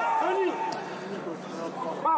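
A man's commentary voice trails off in the first half second. A quieter lull follows, filled by steady background noise of the football ground with faint distant voices.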